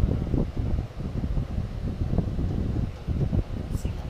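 Low, uneven rumble of noise buffeting the microphone.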